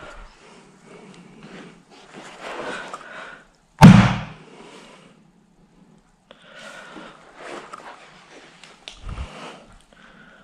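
Quiet scattered handling noise from chipboard flat-pack furniture parts, with one sharp, loud thump about four seconds in and a softer, duller thud near the end.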